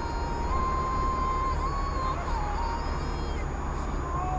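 Music playing inside a moving car's cabin over steady road and engine noise: a single melody line held on long notes, stepping slowly between a few high pitches.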